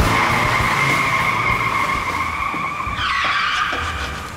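Police patrol car's tyres squealing in one long skid, with a steady screech that shifts and breaks up about three seconds in before dying away.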